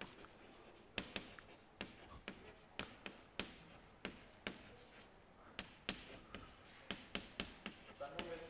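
Chalk writing on a blackboard: a string of sharp, irregularly spaced taps as the chalk strikes the board, fairly faint, with the strongest taps about one, three and a half and six seconds in.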